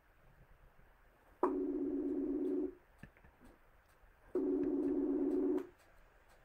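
Ringback tone of an outgoing phone call: two rings, each a little over a second long, about three seconds apart.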